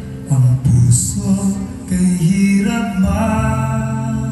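A man singing a song in Tagalog, accompanied by his own strummed acoustic guitar, performed live through the hall's sound system.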